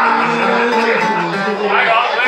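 Live music: an acoustic guitar playing with keyboard accompaniment, and a voice over it.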